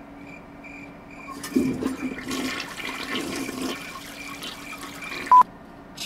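A loud rush of water-like noise that starts about a second and a half in and lasts about four seconds. It ends in a short, sharp beep and then cuts off suddenly. Before the rush, a faint beep repeats a few times a second.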